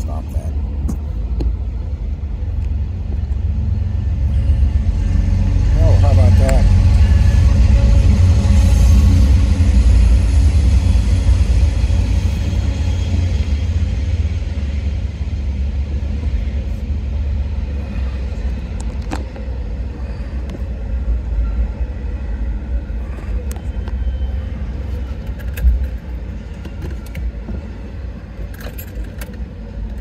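Northbound Norfolk Southern intermodal freight train rolling through a grade crossing: a heavy, steady rumble that builds to its loudest a few seconds in, then eases to a lower, even rumble as the container and well cars roll past.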